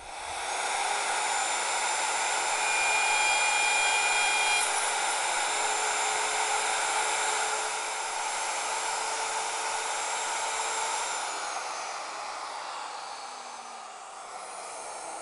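Handheld router running at full speed, its straight bit cutting box-joint fingers in the end of a board clamped in a dovetail jig, a steady high whine over the cutting noise. Near the end the whine falls in pitch and the sound fades as the router winds down.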